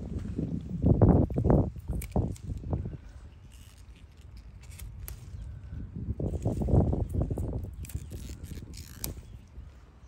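Low rumbling on the microphone in two spells, over the first three seconds and again around seven seconds in, with light rustling and small snaps as pea vines and weeds are handled and pulled.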